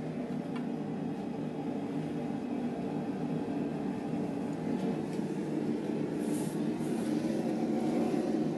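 Bladesmith's forge-welding furnace running steadily at full power, a continuous low, even noise from a furnace held at about 1550 °C. A few faint brief hisses come over it about five to seven seconds in.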